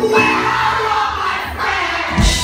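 A live rock band plays through a club PA with drums, acoustic guitar and keyboard. A cymbal crash at the start rings and fades over a second or so.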